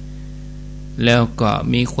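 Steady low electrical mains hum in the recording, heard on its own for about the first second. A man's voice then comes in over it.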